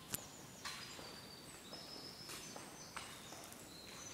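Faint footsteps on a concrete floor, a sharp click about a quarter of a second in being the loudest, the rest coming roughly every half second to second.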